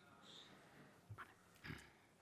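Near silence: room tone, with two faint short sounds a little past a second in.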